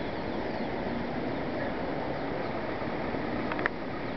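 Steady outdoor rushing noise, with a few faint bird chirps near the end.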